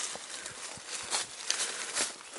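Footsteps walking along a forest path strewn with dry fallen leaves: a few irregular steps and scuffs.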